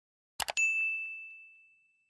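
Subscribe-animation sound effects: a quick double mouse click on the notification bell, then a single bright bell ding that rings on and fades away over about a second and a half.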